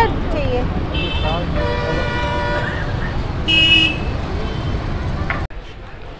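Busy street traffic with vehicle horns honking: a long, steady horn note about one and a half seconds in and a shorter, higher-pitched one around three and a half seconds, over a low traffic rumble. The noise cuts off abruptly near the end.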